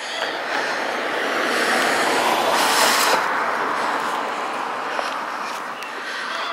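A car passing along the street: road and tyre noise that swells to a peak about halfway through and then fades away.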